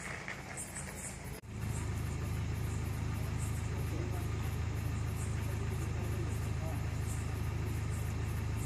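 A car engine idling steadily close by: a constant low hum that comes in on a cut about a second and a half in, with faint voices in the background.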